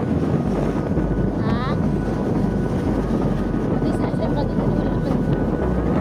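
Wind rushing over the microphone with the steady rumble of a motorcycle riding along a road. A brief pitched sound bends up and down about one and a half seconds in.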